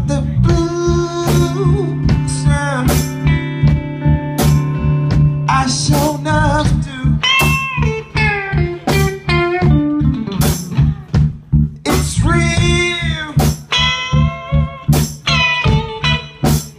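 Live blues band playing: electric guitar lead with bent notes over a steady bass line and a drum kit holding a two-four backbeat.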